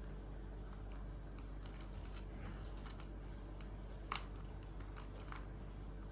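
Faint scattered clicks of a small diary lock and its tiny key being handled while someone tries to lock it, with one sharper click about four seconds in.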